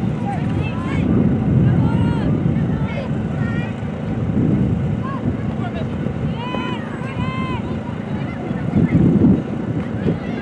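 Wind buffeting the microphone in low gusts, loudest about a second in and again near the end. Through it come distant shouted calls from players and coaches on the soccer pitch, with two drawn-out calls about two thirds of the way through.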